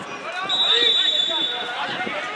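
Football players shouting to each other on the pitch, with one long, steady referee's whistle blast starting about half a second in and lasting over a second.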